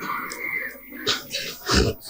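A man weeping close to a microphone: broken, whimpering sobs and breaths, with a few short louder sobs in the second half.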